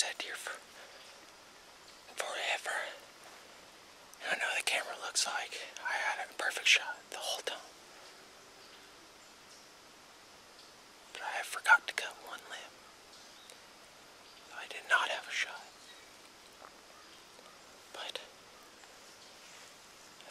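A man whispering close to the microphone in several short bursts, with quiet gaps between them.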